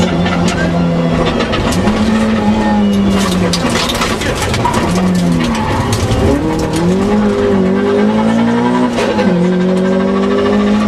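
Toyota Corolla AE86 Levin rally car at full stage pace, heard from inside the cabin: the engine's revs climb and fall repeatedly over steady tyre and road noise. Sharp knocks and rattles come thick in the first half.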